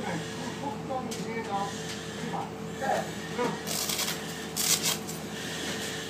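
Faint voices talking over a steady low hum, with a few short bursts of high hiss in the second half.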